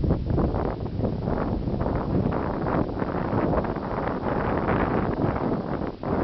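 Wind buffeting the microphone: a dense low rumble that surges and falls in irregular gusts.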